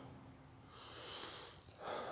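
Insect chorus: a steady, high-pitched drone of crickets or similar insects.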